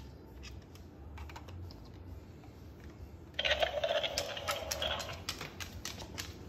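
Scattered light clicks and taps of a Moluccan cockatoo's claws and beak on a hardwood floor as it handles a plush toy. A louder, noisy sound of about two seconds comes a little past the middle.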